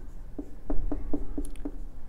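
Marker pen writing on a whiteboard: a quick run of short separate strokes as figures are written.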